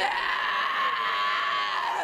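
A woman's long, shrill scream held at one steady pitch for nearly two seconds, then cut off just before the end.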